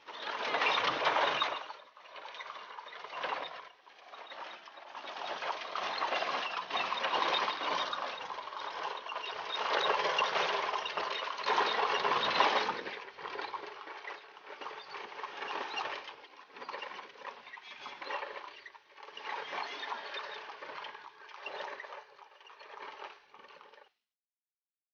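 Rattling and road noise of a horse-drawn cart in motion, louder for several seconds in the middle and then easing off.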